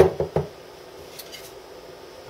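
Wooden boards knocking together as they are handled: three quick knocks in the first half-second, the first the sharpest, then quiet.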